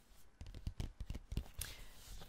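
A stiff white cardboard poster mailer handled close to the microphone: a quick run of light clicks and taps, then a papery sliding rustle. A beaded bracelet on the handling wrist clicks along with it.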